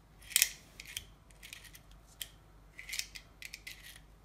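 Aluminium-bodied retractable utility knife being worked by hand: a series of short metallic clicks and scrapes from its sliding blade mechanism, the sharpest about half a second in.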